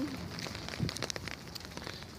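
Rain falling on an umbrella held just overhead: many small ticks over a steady hiss.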